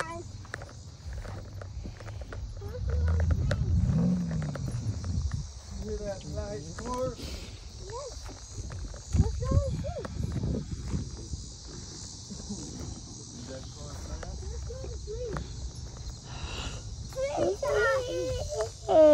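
A young child's voice calling out and vocalising now and then, without clear words, over a low rumble on the phone's microphone in the first few seconds.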